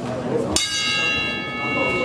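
Boxing ring bell struck once about half a second in, ringing on with several clear steady tones: the signal to start the round.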